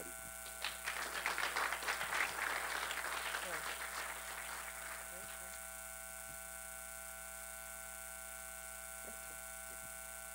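Audience applauding for about four seconds, then dying away, leaving a steady electrical hum.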